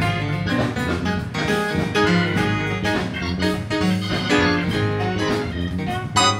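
Church band playing an instrumental processional with a steady beat.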